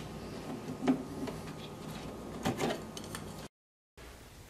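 Light scrapes and clicks of a wall switch cover plate being unscrewed and taken off, one about a second in and a cluster around two and a half seconds; the sound cuts off suddenly near the end.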